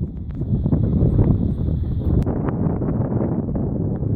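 Strong wind buffeting the microphone: a loud, gusty low rumble.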